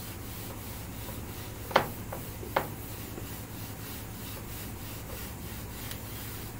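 Board eraser rubbing across a classroom board in quick, repeated wiping strokes, with two sharp clicks about two seconds in.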